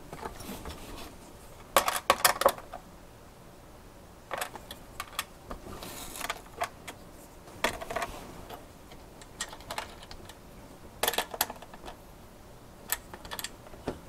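Small metal clicks and light rattles at irregular intervals, in quick clusters about two seconds in, around four to five seconds and near eleven seconds: a screwdriver working the CPU cooler's metal standoffs and screws against the steel backplate, with the parts shifting as the board is handled.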